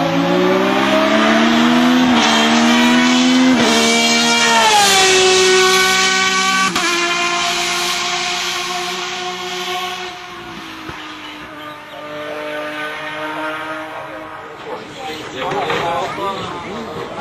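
Osella PA 27 hillclimb sports-prototype race car accelerating hard past at high revs, its engine pitch climbing and dropping through several quick gear changes in the first seven seconds. The engine note then holds and fades as the car pulls away up the course.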